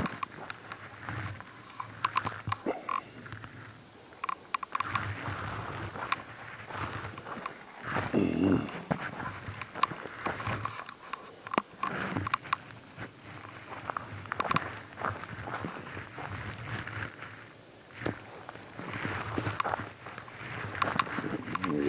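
Footsteps crunching through a thin layer of snow, an irregular run of short crunches, with a louder, longer noise about eight seconds in.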